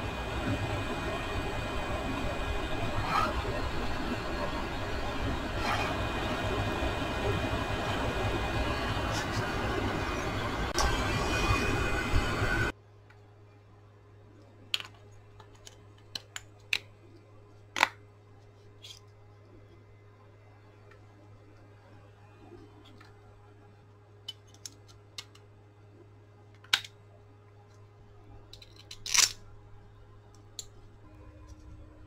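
Heat gun running steadily as it shrinks heat-shrink tubing over a brushless drill motor's wire joints, switched off abruptly about 13 seconds in. After that come scattered light clicks and knocks of the metal motor parts being handled and fitted together.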